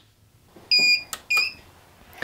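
Two short, high electronic beeps about half a second apart, with a click between them.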